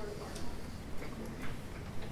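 A regular series of light clicks or taps, about two a second.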